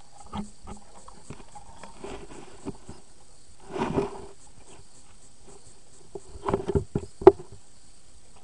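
Muffled knocks, taps and water movement picked up by a camera underwater in a swimming pool, over a faint steady hiss. A longer rustling surge comes about four seconds in, and a cluster of sharper knocks near the end.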